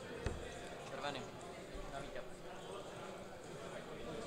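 A steel-tip dart hitting a Winmau Blade bristle dartboard with one sharp thud about a quarter of a second in, over a steady murmur of many voices.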